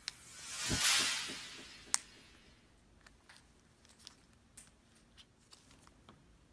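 A brief rushing hiss that swells and fades about a second in, with a sharp click just before two seconds. Then faint, scattered small clicks and taps of a plastic pry tool on the keyboard ribbon connector and its plastic latch.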